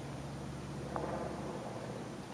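Steady low background hum with a light hiss, and one faint tap about a second in.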